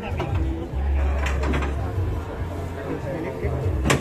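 Indistinct chatter of several men over a steady low rumble, with one sharp knock just before the end.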